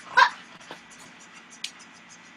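A pet animal's brief high-pitched cry about a quarter second in, followed by a faint click and a short thin squeak near the end.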